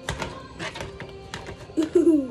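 Spoon clicking and scraping against a plastic tray while stirring a thick mixture: a handful of irregular sharp clicks. Background music plays throughout, and near the end there is a short, loud pitched sound that falls in pitch.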